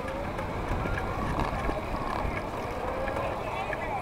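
Low rumble of a vehicle moving slowly along the street, swelling about a second in, with crowd voices over it.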